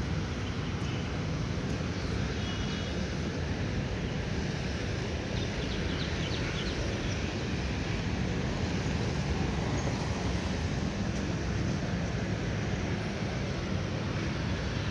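Steady city street traffic noise, a continuous low rumble of cars and motorcycles on the road alongside.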